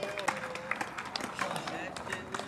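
Several people calling out and talking in the background, with scattered sharp clacks and slaps of skateboards and bodies on concrete.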